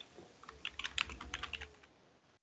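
Typing on a computer keyboard: a quick run of faint keystrokes starting about half a second in.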